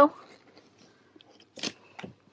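Books being squeezed into a tight gap on a shelf: faint scuffing of covers rubbing against each other, with a short sharp rustle near the end.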